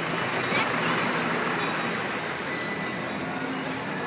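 Steady city street noise of traffic and a crowd of onlookers, with a short, loud knock about a third of a second in.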